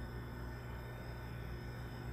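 A steady low hum with a faint hiss over it and no other event: room tone.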